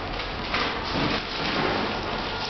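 The motorised petal mechanism of a crocheted kinetic flower sculpture running as it opens the petals. It gives a continuous rustling, scraping noise that grows louder about half a second in.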